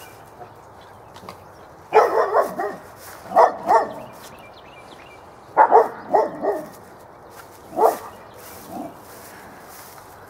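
A dog barking in short clusters of several barks each, with pauses of a second or two between the clusters.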